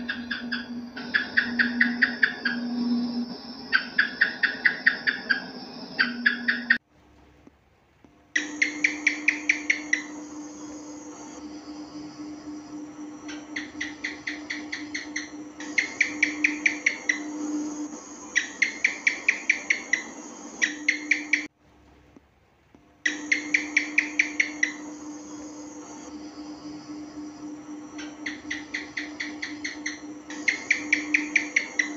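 House gecko (cicak) calls: repeated short runs of rapid chirping clicks, several clicks a second, each run lasting a second or so, over a steady low hum. The sound breaks off twice for about a second and a half.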